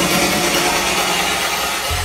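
Techno track in a breakdown. The kick drum and bassline drop out, leaving a gritty wash of noise like a build-up, and a deep steady bass tone comes back in near the end.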